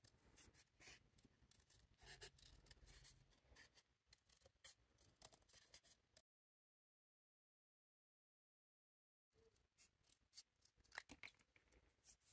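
Small scissors making faint, short snips as they trim around the edges of a paper cutout. The sound drops out completely for about three seconds in the middle, then the snipping resumes.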